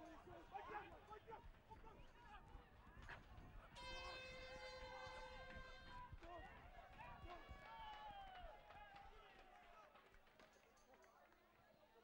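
A stadium hooter sounds one steady blast about four seconds in, lasting about two seconds, marking full time at 80 minutes. Faint shouts from players on the field come before and after it.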